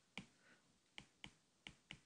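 Faint taps and clicks of a stylus tip on a tablet's glass screen while writing, about five short ticks over two seconds.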